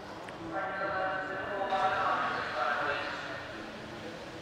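A person's voice speaking, fainter than the commentary around it.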